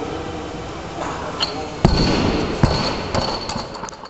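Loaded barbell with rubber bumper plates dropped onto a wooden lifting platform after a snatch: a heavy thud about two seconds in, then a smaller bounce under a second later.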